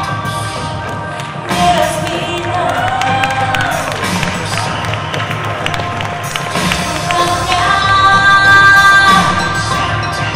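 Live concert music over a hall PA, with long held tones and a gliding melodic line, while the audience cheers through the middle part.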